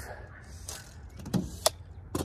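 Soft rustle, then two short sharp clicks in quick succession in the second half.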